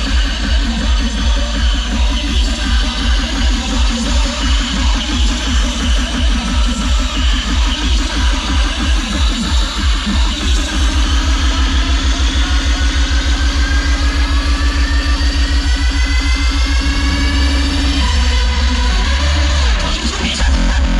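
Loud hardstyle DJ set over a festival sound system, heard from within the crowd: a pounding kick-drum beat that about halfway through gives way to a faster, denser roll under a held synth note, with a rising sweep over it, a build-up toward a drop.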